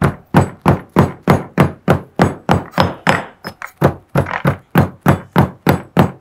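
Stone pestle pounding green leaves in a stone mortar: a steady run of loud thuds, about three and a half strokes a second.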